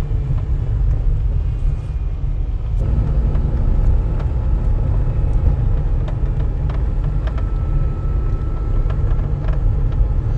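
A car rolling slowly along a dirt road, heard from inside the cabin: a steady low rumble with scattered small ticks, and a faint steady hum that joins about three seconds in.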